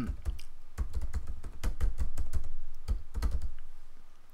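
Typing on a computer keyboard: an irregular run of quick key clicks with dull knocks carried through the desk, busiest in the middle.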